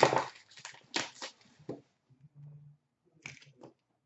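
Plastic shrink-wrap crinkling and tearing as a sealed trading-card box is unwrapped, loudest at the start in a few sharp crackling bursts. Near the end come a few light cardboard rustles and taps as the box is opened.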